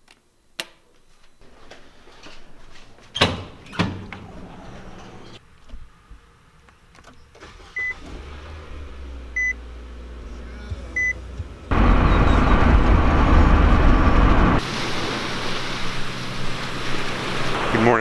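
A few sharp clicks, then a car's warning chime beeping three times about a second and a half apart. About two-thirds of the way in, the car's engine starts with a sudden loud, steady noise that eases after a few seconds into steadier running noise.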